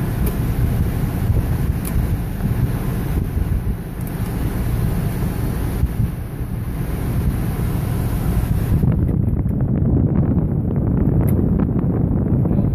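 Steady cabin noise inside a GMC Yukon Denali, a deep rumble with a rushing hiss from the idling engine and climate-control fan. About nine seconds in, the high hiss falls away and the rumble carries on.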